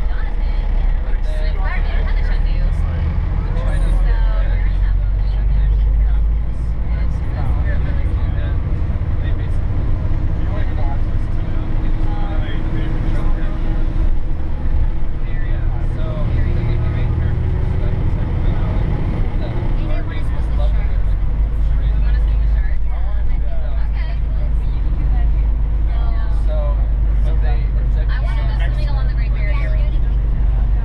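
Steady low rumble of a bus's engine and tyres heard from inside the cabin, with a faint hum that rises slowly in pitch through the middle, and people talking over it.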